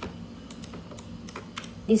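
A few scattered clicks from a computer keyboard and mouse over a steady low hum; a voice begins speaking right at the end.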